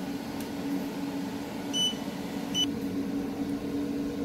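OCA vacuum laminator running with a steady hum, with two short high beeps from its control panel a little under a second apart near the middle.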